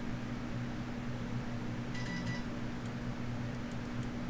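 Steady low hum of a computer fan and room noise picked up by a desk microphone, with a few faint clicks from a mouse near the end.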